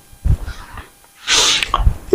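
A short, sharp breath drawn in through the nose about a second and a half in, with soft low thumps of body movement before and after it.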